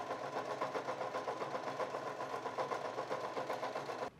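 Domestic sewing machine running steadily as it sews a triple straight stitch on knit fabric, the needle moving back and forth, with a fast, even rhythm of needle strokes.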